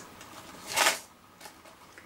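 A brief rustle of die-cut card pieces being handled and slid on a craft mat, once, about a second in.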